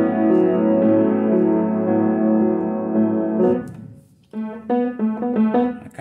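Upright piano playing held chords that ring on and fade away about three and a half seconds in. After a brief gap, a run of short, clipped sounds follows near the end.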